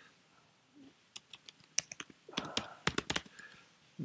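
Typing on a computer keyboard: a short, irregular run of keystrokes starting about a second in.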